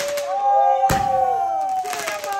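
Aerial fireworks going off in sharp bangs, one at the start and another about a second later. Under them, voices call out in long, drawn-out cheering cries that slide slightly in pitch.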